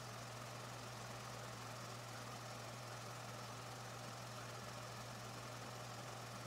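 A steady low hum over faint background hiss, unchanging throughout, with no other distinct sound.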